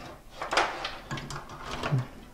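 Power supply cables and their plastic connectors rustling and knocking softly against each other and the metal case as they are sorted by hand, with the loudest clatter about half a second in.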